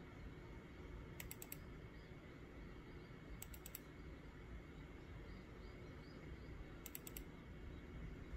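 Faint computer mouse clicking: three quick bursts of about four clicks each, at about one, three and a half, and seven seconds in.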